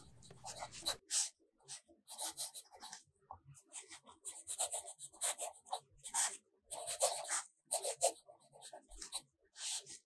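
Fountain pen nib scratching across steno notebook paper as cursive is written, in many short, irregular strokes with brief pauses between words.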